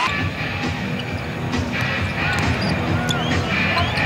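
Arena music playing under live game sound: a basketball being dribbled on the hardwood court and a few short, high sneaker squeaks in the second half.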